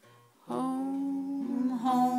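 A person humming without words: after a brief hush, one long held note begins about half a second in, then the pitch changes near the end.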